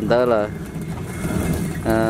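A singing voice in a song. One wavering phrase ends about half a second in, and a new held note starts near the end, with a low, steady rumble in the gap between them.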